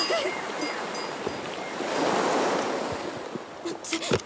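Sea waves washing. One swell builds to a peak about halfway through, then ebbs away.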